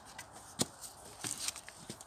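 A few light clicks and knocks of a plastic bucket being handled and set under a plastic tote's outlet valve, with one sharper click about half a second in.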